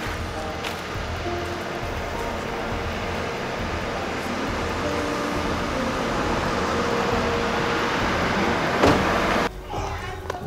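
Background music over a hissing swell that builds steadily and cuts off abruptly near the end. Just before the cut comes one sharp knock, a car door shutting.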